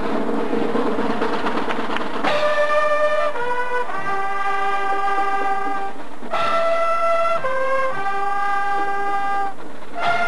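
Drum and bugle corps playing: a snare drum roll for about two seconds, then the bugle line comes in with loud sustained brass chords. The chords change a few times, with a brief break about six seconds in.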